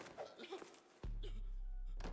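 Faint short squeaky glides, then a steady low electrical-sounding hum that starts abruptly about a second in: sound design from the animated film's soundtrack.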